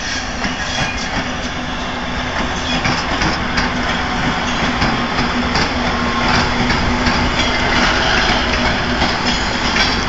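Diesel-hauled freight train passing close by: the locomotive goes past first, then loaded flatcars roll by with wheel clatter on the rails, with a steady low hum and a level that grows a little louder.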